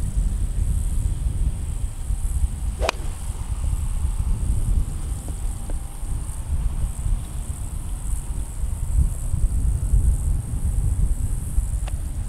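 Wind rumbling on the microphone throughout, with a single sharp click about three seconds in: a 7-iron striking a golf ball off the tee, a shot the golfer calls hit really poorly.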